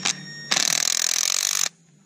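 Cordless impact driver run in one burst of about a second, starting about half a second in and cutting off suddenly, as it tightens two jam nuts hard against each other on a wheel-weight bolt.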